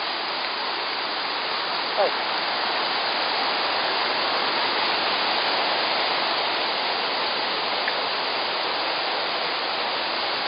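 Steady rushing of the Krka River's white-water cascades. A brief sharp chirp-like sound cuts in about two seconds in.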